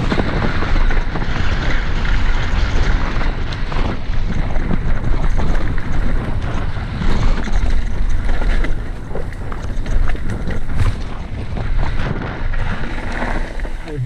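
Mountain bike descending a rough dirt and gravel trail at speed: heavy wind buffeting on the camera microphone over tyre rumble, with constant rattling and knocks from the bike over bumps.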